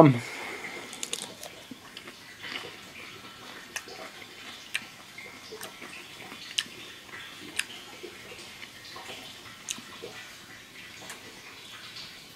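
Someone chewing a crunchy raw Black Hungarian pepper close to the microphone: faint, irregular crunches and clicks roughly once a second.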